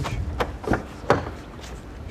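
Rear door of a Volkswagen Polo hatchback being unlatched and pulled open: three sharp clicks about a third of a second apart, the last, about a second in, the loudest.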